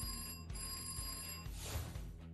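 Telephone ring sound effect over music: two rings, a short one and then a longer one of about a second, followed by a brief rush of noise near the end.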